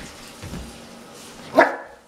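One short, loud bark from a young Rhodesian Ridgeback, about one and a half seconds in.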